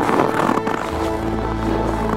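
Background music with sustained held tones and a low drone. A short burst of rushing, swishing noise sits over it during the first second.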